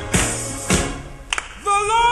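Black gospel choir song with a steady beat struck a little under twice a second. A singer's held, wavering note comes in about one and a half seconds in.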